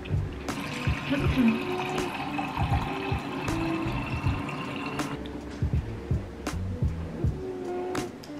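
Kitchen tap running water into a glass. The flow starts about half a second in and cuts off at about five seconds, over background music.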